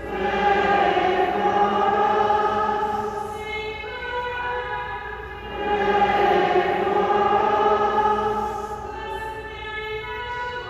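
Slow religious singing by voices: two long phrases of held notes that swell up, with a softer stretch between them about halfway through.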